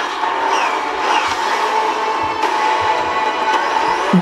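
Film trailer soundtrack playing back: music under a steady rushing spacecraft engine sound.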